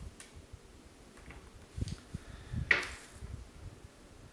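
Quiet handling sounds of fly tying: tying thread being wrapped from a bobbin around a hook held in a vise, with a few soft clicks and low bumps. One sharper, brief scrape a little under three seconds in is the loudest sound.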